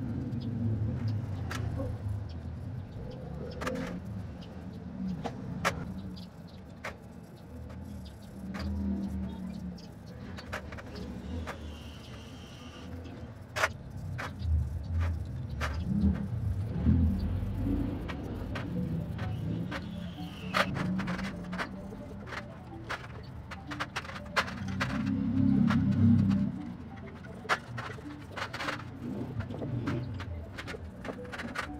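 Brake caliper parts being scrubbed with a toothbrush in a stainless steel tray of degreaser: many small irregular clicks and knocks of metal parts against the tray. Under them runs a low rumble that swells several times, loudest near the end.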